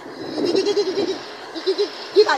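Goat bleating: a wavering, quavering call about half a second in, then a shorter one near the end.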